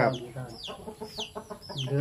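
Birds calling: a series of short high calls, each falling in pitch, about four in two seconds.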